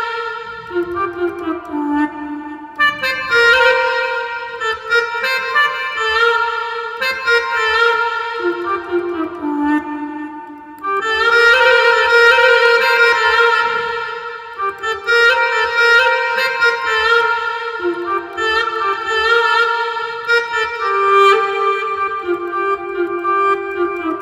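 Arranger keyboard playing a single-line melody in a sampled wind-instrument voice: the musical introduction of a Gulf shaila, note by note with short breaks between phrases.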